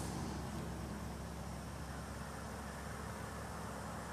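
A low, steady motor hum over a faint hiss, unchanging throughout.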